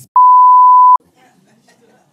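Censor bleep: a single loud, steady 1 kHz tone lasting under a second, cutting in and out sharply over a spoken word.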